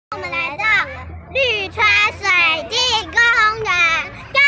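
Young girls' high-pitched voices in a sing-song run of drawn-out syllables, with short pauses between phrases.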